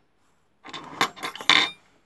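Small metal repair tools clattering and clinking against each other and the bench as they are picked up and set down, a rattling burst of about a second that is loudest just before it stops.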